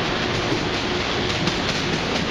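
An Acela Express trainset standing at the platform with its equipment running: a steady whir with a faint, even hum under it.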